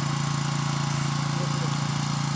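A small engine running steadily at one even speed, a constant low drone with no rise or fall.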